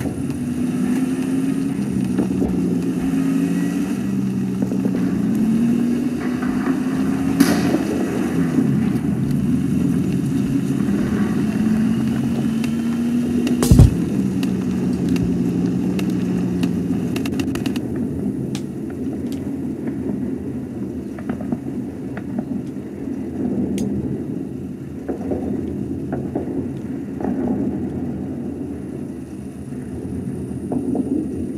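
Jeep engine running and revving, its pitch stepping and gliding up and down. There is a small crack about seven seconds in and a sharp bang, the loudest sound, about fourteen seconds in. From about eighteen seconds the engine settles to a duller, steadier rumble.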